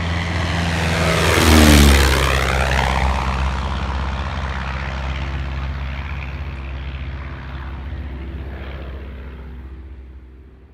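Stampe SV4B biplane's de Havilland Gipsy Major four-cylinder engine and propeller flying past: loudest about two seconds in, its pitch dropping as it passes, then fading steadily as it flies away.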